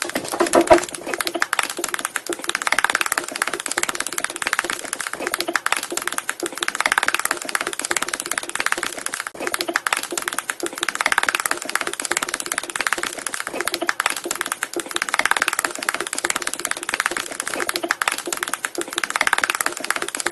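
Dense, rapid clicking like fast typing, one continuous clatter that swells and eases about every four seconds.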